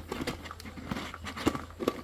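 Plastic motor head of an electric food chopper being twisted and seated onto its bowl: faint rubbing and a few light clicks, the sharpest near the end.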